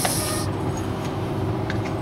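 Steady low hum of background noise, with a short hiss in the first half second.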